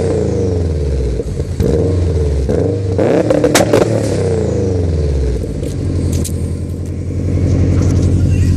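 Subaru WRX's turbocharged flat-four held on an AEM two-step launch-control limiter, the exhaust popping and crackling as the ignition cuts. The revs drop away, come back onto the limiter with more pops in the middle, then settle to a steady lower run before rising again near the end.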